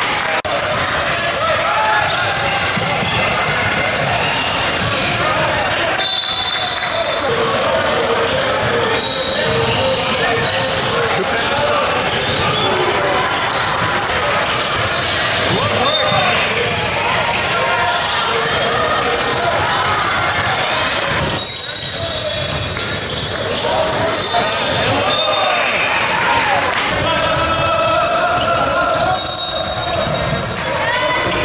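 Live basketball game sound in a large, echoing gym: balls bouncing on a hardwood court, players' and onlookers' voices, and several short high squeaks.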